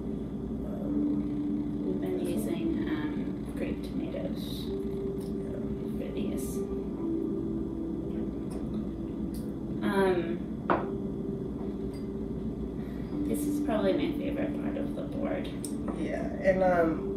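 Soft vocal sounds, held wavering tones and a brief voice-like sound about ten seconds in, over faint light clicks of hands handling food on a table.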